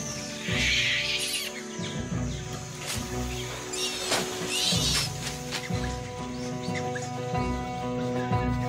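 Documentary music with held notes and a pulsing low beat, with macaques giving loud, harsh calls over it twice: about half a second in and again around four to five seconds in.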